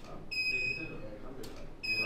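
Two sharp clicks, each followed a moment later by a steady, high-pitched electronic beep: studio flash units firing and sounding their ready beep as they recharge. The first beep lasts under a second, and the second begins near the end.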